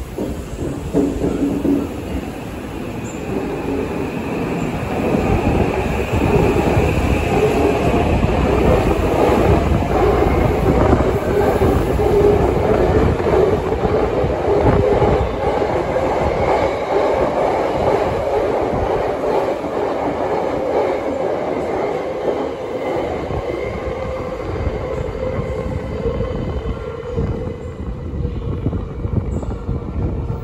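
Tokyo Metro 8000-series subway train pulling out of an underground station and accelerating past along the platform. A motor whine rises in pitch over heavy wheel and rail noise. The sound builds over the first few seconds and eases off near the end as the last cars go by.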